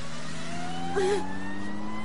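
Car engine revving, its pitch rising slowly and steadily.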